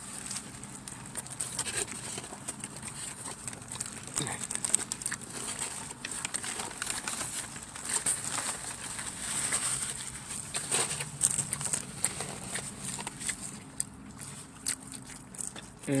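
Close-up eating sounds of a man working through a huge multi-patty cheeseburger: wet chewing and lip-smacking, heard as a steady scatter of short clicks and crackles. Paper wrapper crinkles now and then.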